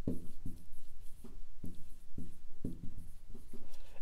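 Dry-erase marker writing on a whiteboard: a quick run of short strokes and taps as words are written out.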